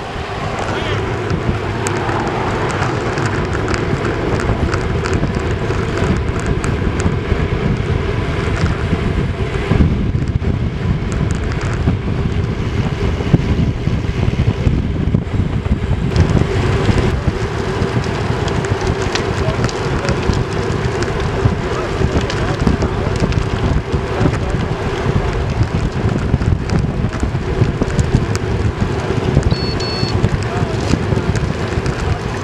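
Steady wind rush on the microphone of a camera on a road bike riding at about 25–33 km/h, with tyre and road noise under it and a faint steady hum.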